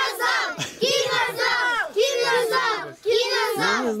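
A group of children chanting loudly in unison, the same short shouted phrase repeated about once a second.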